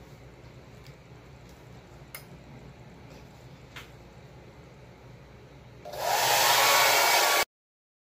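Quiet room with a few faint clicks, then a hand-held hair dryer switched on about six seconds in. It runs loudly for about a second and a half before the sound cuts off suddenly.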